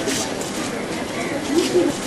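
Low cooing bird call, a short one about one and a half seconds in, over a steady background hiss.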